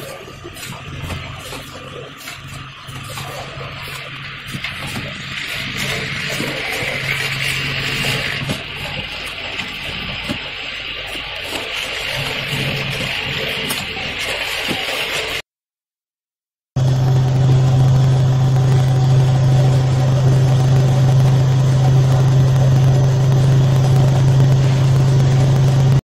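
Spice powder filling and capping line running: a steady machine hum and whir with light clicking of bottles on the conveyor. After a short cut to silence about fifteen seconds in, a louder, very steady low machine hum follows.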